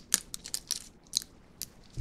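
Sparse, sharp crinkly clicks and crackles of a plastic iced-coffee bottle being handled, fingers picking at its cap and neck.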